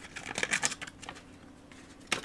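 A small clear plastic parts bag crinkling and rustling as it is handled and opened, with a few short crinkles in the first second.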